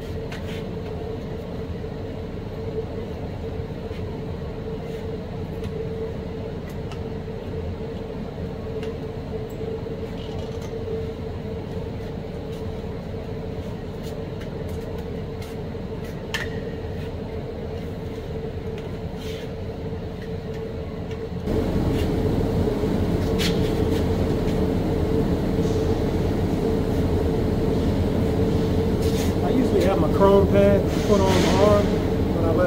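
Steady drone of welding-shop ventilation fans with a constant mid-pitched hum and a few light clicks. It gets abruptly louder about two-thirds of the way through.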